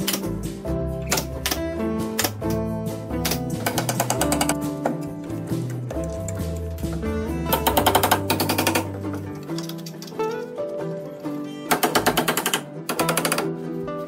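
Background music over three bursts of rapid sharp shots from a pneumatic nail gun fastening plywood formwork: one about three and a half seconds in, one at about eight seconds, and a louder one near the end.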